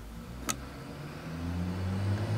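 A single sharp click about half a second in, then a low engine hum that grows steadily louder through the second half.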